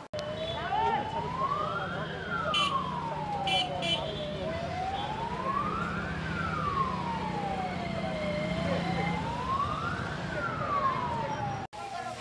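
Emergency vehicle siren wailing slowly up and down, each rise and fall taking about four seconds, over a steady low hum and crowd voices.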